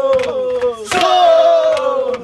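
A group of voices shouting long calls together, two in a row, each starting sharply and sliding a little down in pitch.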